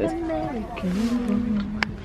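A person's voice: a short word, then a long drawn-out vocal sound held on one pitch through the second half. A sharp click comes near the end.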